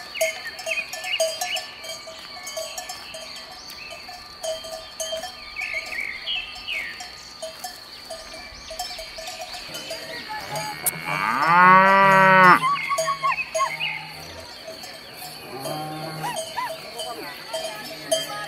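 Cattle bells clanking steadily as a herd of cattle mills about, with a cow giving one long, loud moo about two-thirds of the way through.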